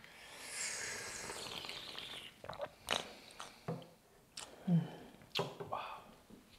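A long, airy slurp of tea from a small tasting cup, lasting about two seconds, followed by a few short mouth smacks and clicks.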